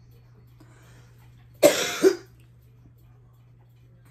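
A woman with laryngitis coughs twice in quick succession about a second and a half in, trying to clear phlegm from her throat.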